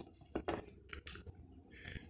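Handling noise close to the microphone: a few short, irregular scratchy clicks and scrapes as the phone and the stitched fabric are moved.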